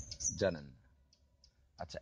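Conversational speech that trails off less than a second in, then a short pause with a few faint clicks, and speech again near the end.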